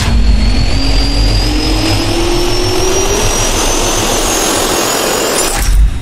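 Jet turbine spool-up sound effect: a steady rush of air with a whine that rises in pitch, ending in a brief loud swell near the end before it fades out.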